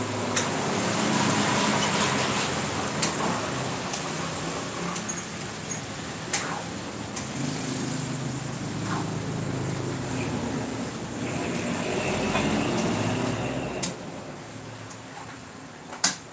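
A metal ladle clinking against a wok a few separate times, a few seconds apart, over a steady rushing noise with a low hum beneath it.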